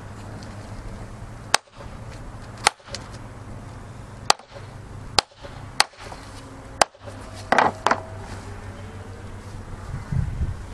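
Hammer striking a canvas hole-punch tool five times, driving it through acrylic sprayhood canvas backed by a magazine and a wooden board: sharp single blows a second or so apart, then a brief rustle near the end.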